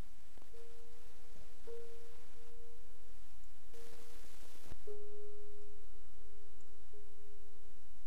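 An instrumental music track streamed from Bandcamp playing a single held tone. It steps slightly lower in pitch about five seconds in, just after a brief hiss.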